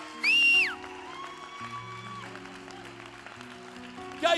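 Quiet background music of held, slowly changing chords, with a brief loud, high-pitched held cry near the start that drops in pitch as it ends.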